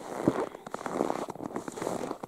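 Footsteps crunching in snow, with irregular crackling between the steps.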